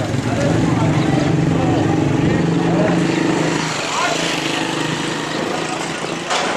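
A motor engine running steadily, holding one low pitch for about three and a half seconds before fading, over background voices.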